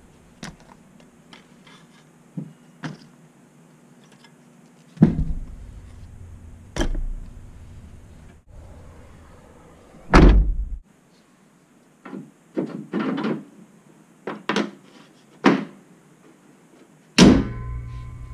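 A hatchback's rear hatch slammed shut with a heavy thud about ten seconds in, the loudest sound here. Before and after it come scattered clunks and knocks of gear being put into the car's cargo area.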